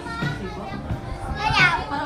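A child's high voice calls out loudly about one and a half seconds in, over people chatting and background music with a steady beat.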